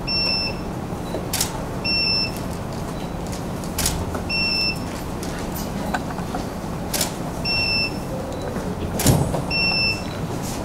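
A camera shutter clicks four times at uneven intervals, and about half a second after each click a short high electronic beep sounds, typical of a studio flash signalling it has recharged. A low steady hum runs underneath.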